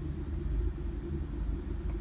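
A low, steady background rumble with a faint hiss above it and no distinct events.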